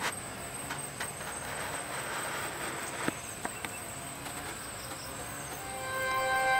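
A steady high-pitched insect drone over an even outdoor hiss. A handful of sharp crackles come from a wood fire burning in a fire pit.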